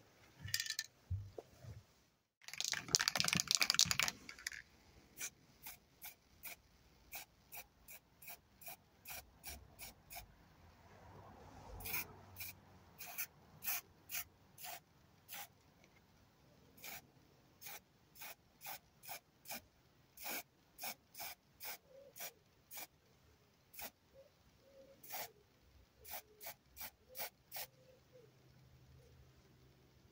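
Aerosol spray-paint can hissing: one longer spray of about two seconds near the start, then a long series of short, quick spurts, about one or two a second, as camouflage spots are dabbed on.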